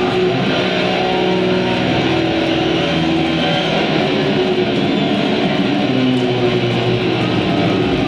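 Live nu-metal band at full volume through a concert PA, with heavy distorted electric guitars and bass holding long sustained chords and no singing, as the song rings out.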